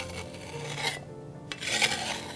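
A flat metal blade scraping across the rim of a copper measuring cup, levelling off heaped bread flour. There is a short scrape at the start, another just before the middle, and a longer, louder scrape in the second half.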